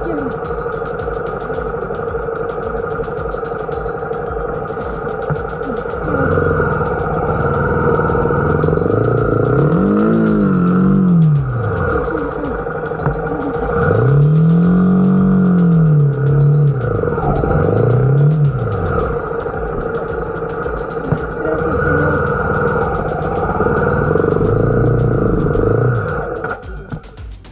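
Honda XRE300 single-cylinder engine running while the bike is worked along the track by hand, revving up and falling back several times: twice in quick succession about ten seconds in, once longer around fifteen seconds, and once briefly near eighteen seconds.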